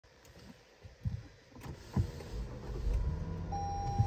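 Two clicks, then the electric motor of a Lexus GS power tilt-and-telescopic steering column running steadily as the wheel moves into driving position when the car is switched on. A thin, steady electronic tone joins near the end.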